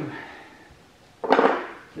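A single sharp clatter of a hand tool against wood and metal about a second in, as a wrench is worked on the engine-to-bell-housing bolts.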